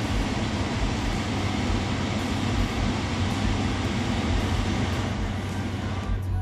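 Tesla Model S cabin climate-control blower running on a high fan setting: a steady rush of air from the vents. The rush dies away near the end as the fan is turned down.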